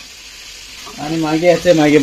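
Oil sizzling as coated pieces of food deep-fry in a steel pan on a gas stove, a low steady hiss. A man's voice comes in over it about a second in.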